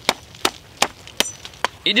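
Machete chopping the root end off a harvested agave heart: five quick, sharp strikes, a little over two a second.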